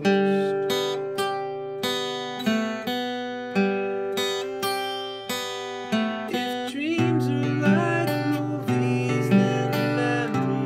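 Acoustic guitar chords picked and strummed, each chord ringing out and fading before the next. About seven seconds in a low bass note comes in and the playing gets busier, with a short upward slide in pitch.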